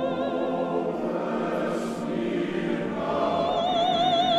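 Classical sacred music: a choir singing sustained chords, then a solo operatic voice with wide vibrato comes in about three seconds in.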